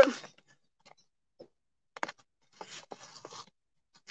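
Hand trowel digging into garden soil through a paper mulch sheet: a sharp click about two seconds in, then about a second of faint scraping and crunching.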